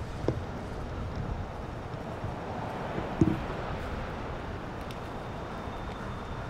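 Steady outdoor background rumble, with two brief low thumps: a small one just after the start and a louder one about three seconds in.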